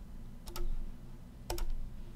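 Computer mouse clicking: a single click, then a quick double click about a second later, over a low steady hum.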